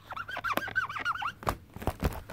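Felt-tip marker squeaking on a surface in a quick run of short strokes as it writes, followed by two sharp clicks near the end.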